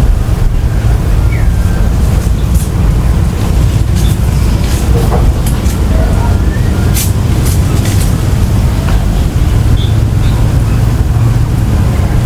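Steady low rumble of wind buffeting the microphone, with a few faint high ticks in the middle.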